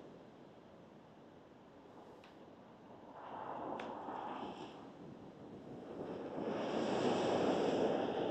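Road traffic passing close by: a swell of tyre and engine noise about three seconds in that fades, then a louder one building near the end.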